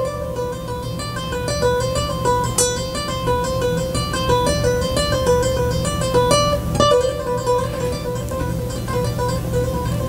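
Acoustic guitar played with fast alternate picking on one string, a short pattern of notes stepping up and down between a few close pitches, repeated without a break. It is picked as fast as it will go, the player working on speed and the synchronisation of both hands.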